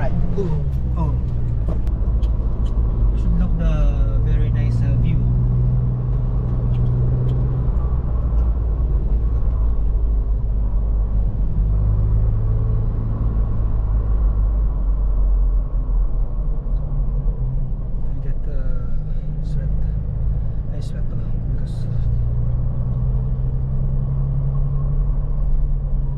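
SUV engine heard from inside the cabin while driving over desert sand dunes: a continuous low rumble whose engine note swells and settles a few times as the revs change.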